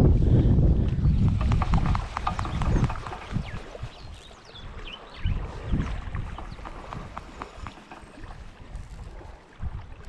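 Gusty wind rumbling on the microphone, heaviest in the first two seconds and then easing, with light clicks and knocks as a fishing rod and reel are handled.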